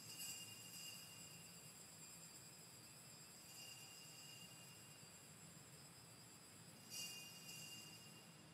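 Altar bells rung faintly three times, near the start, about three and a half seconds in and near the end, each ring leaving a high shimmering tone. They mark the elevation of the consecrated host after the words of consecration.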